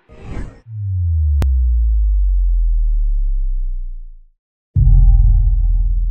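Cinematic title sound effects: a brief whoosh, then a deep bass tone sliding downward for about three and a half seconds and fading out, followed near the end by a sudden heavy low boom that rings on.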